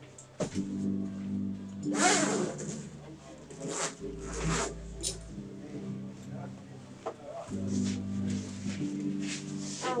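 Soft background music of sustained chords that shift every few seconds, with scattered rustles and clicks as a French horn case is opened and the horn is lifted out.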